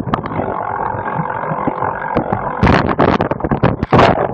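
Bike-mounted camera and bicycle rattling and knocking over rough grass, with a smoother, steadier stretch for the first two and a half seconds before the dense knocking starts again.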